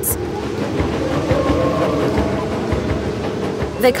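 Dense, steady sound-design bed of layered music and rumbling ambient noise, with a train-like rolling character, illustrating a song made by trains.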